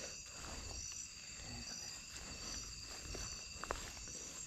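Night insects calling steadily, a high continuous trill with a short high chirp repeating a little more than once a second, over the low rustle of footsteps moving through grass and brush.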